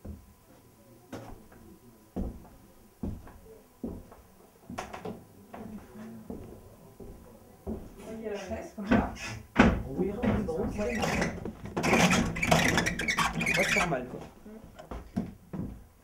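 Scattered footsteps and knocks on a wooden floor, then a louder stretch of indistinct voices mixed with clatter and handling noise in a small room.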